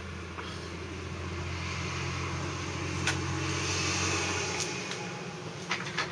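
A car driving past, its tyre and engine noise swelling to a peak and fading away, over a steady low hum, with a couple of short clicks near the end.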